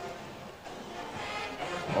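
Stadium ambience fading in: steady crowd noise with music playing faintly in the stadium.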